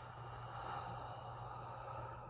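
A long, slow breath out through rounded lips, a soft even rush of air lasting over two seconds, taken as the 'out' half of a paced deep-breathing exercise.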